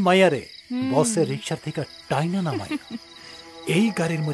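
Crickets chirring steadily, a high even night ambience, under a man's agitated talking in short, broken phrases.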